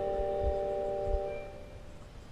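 Marching band's closing chord with mallet percussion, a few steady held tones ringing out and fading away about a second and a half in, with a couple of faint low thuds under it.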